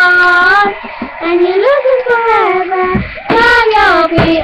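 Two young girls singing a pop song together, holding long notes that slide up and down in pitch, with a brief break about three seconds in before the next line.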